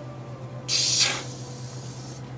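Aerosol whipped-cream can sprayed once, a short hissing burst of about half a second, about two-thirds of a second in.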